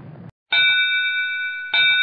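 A bell struck twice, about a second and a quarter apart, each strike ringing on with a steady metallic tone that fades slowly.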